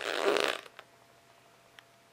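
A short breathy puff of air blown out through the lips, a raspberry-like sputter about half a second long at the start. It is followed by near-silent room tone with a faint steady hum and a couple of tiny clicks.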